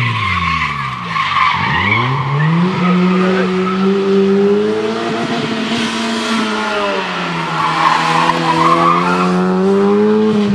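Fiat Cinquecento rally car driven hard: the engine's revs drop about a second in, then climb and hold high, dip again around seven seconds and rise once more. The tyres squeal through the corners near the start and again about eight seconds in.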